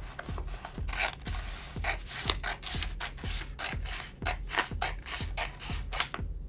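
Scissors cutting through a sheet of self-adhesive vinyl with its paper backing: a steady run of short, scratchy snips, about three a second.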